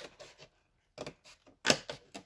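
Scissors cutting into the cardboard of an advent calendar door: a few short snips, the sharpest near the end.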